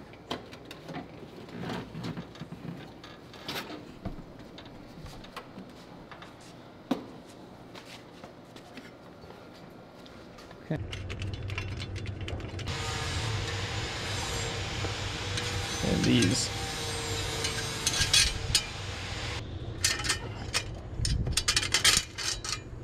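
Scattered small clicks and knocks of hand work inside a car. From about halfway a steady hum sets in, with metal clinks and rattles as a screwdriver and wrench work the bolts of a metal bracket.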